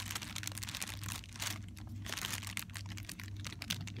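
Cellophane wrapping on a packaged paper lantern crinkling as it is handled, a dense run of crackles that starts suddenly and keeps going, over a steady low hum.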